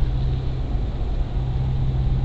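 Car driving at road speed, heard from inside the cabin: a steady low drone with an even road hiss.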